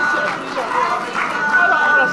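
Several people talking at once: overlapping, indistinct conversation among a gathering, with no single voice standing out.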